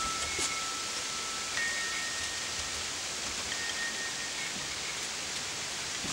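Metal-tube wind chime ringing softly: long single tones at a few different pitches, one after another, over a steady background hiss. A couple of light clicks come about half a second in.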